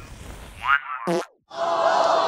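A firework rocket's fuse hissing and crackling, then a quick cartoon-style downward pitch drop as the fuse fizzles out without launching. After a brief silence, a crowd lets out a disappointed 'aww' that slides down in pitch.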